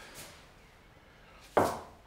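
A single sharp knock about one and a half seconds in, a hard object struck or set down, with a faint short ring after it. The rest is quiet room tone.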